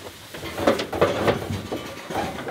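Irregular knocks and rattles from sheep shifting about in a metal-railed livestock trailer.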